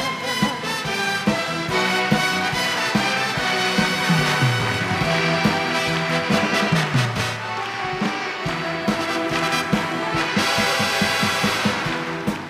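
A live stage orchestra plays an instrumental interlude between songs, with brass over a steady drum beat. Two low notes slide downward, about four and seven seconds in.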